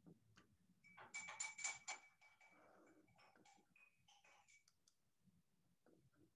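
Faint computer keyboard typing: a quick run of about half a dozen key clicks about a second in, then a few scattered clicks, over near silence.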